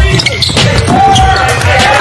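Basketball bouncing on a hardwood court during play, with background music underneath.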